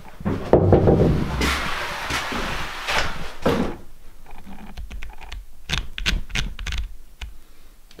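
Thuds, knocks and clicks of someone moving about a small log-walled room: footsteps on wooden floorboards with a stretch of rustling, then a run of separate sharp knocks and clicks in the second half.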